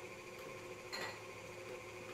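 Electric stand mixer running steadily at a raised speed, beating butter, sugar, eggs and flour into cookie dough, with a light click about a second in.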